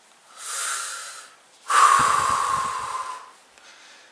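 A man breathing heavily, twice: a shorter breath about half a second in, then a louder, longer one like a sigh.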